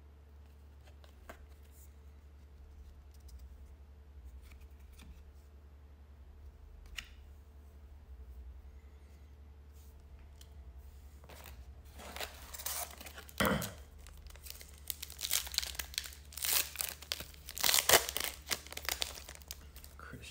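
A trading-card pack's wrapper being torn open and crinkled: a run of loud tearing and crackling bursts through the second half, after faint clicks of cards being handled.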